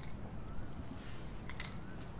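Nylon rope being handled and pulled through a short PVC pipe handle: quiet handling noise with two or three quick light clicks about a second and a half in.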